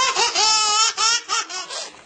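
High-pitched laughter from a person laughing hard, in quick repeated bursts that rise and fall in pitch.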